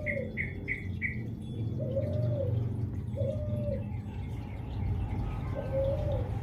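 Birds calling: a low, even call about half a second long repeats four times, one to two and a half seconds apart, and four quick higher chirps come in the first second.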